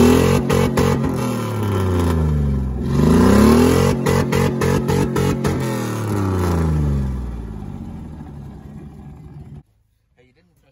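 Chevy Blazer engine revved hard three times, its pitch climbing and falling each time, with a run of sharp clacks through the first few seconds; this is the driver running it toward valve float. The sound cuts off suddenly near the end.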